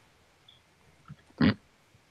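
Near silence, then one short spoken "yeah" about one and a half seconds in.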